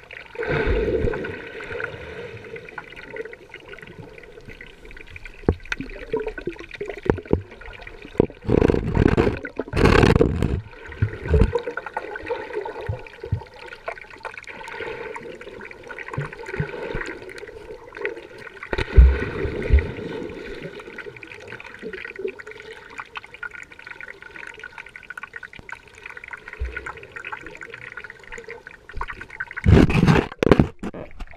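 Water heard from an underwater action camera: a muffled, steady churning of water and bubbles from swimmers kicking and stroking just overhead, with louder rushes about nine to eleven seconds in and again near nineteen seconds.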